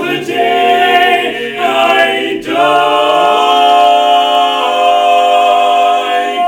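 Barbershop quartet of four men singing a cappella in close harmony. After a brief break about two and a half seconds in, the bass slides up and the four voices hold one long chord.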